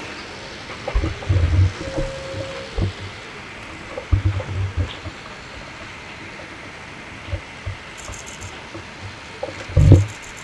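Irregular low thuds and rumbles on an open microphone over a steady faint hiss, the strongest coming near the end.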